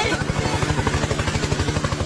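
Helicopter rotor sound, a fast, even chopping pulse that holds steady throughout.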